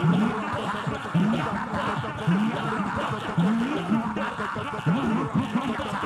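A large congregation praying aloud all at once, many voices overlapping in a steady babble. One nearer voice rises in short repeated cries, about once a second.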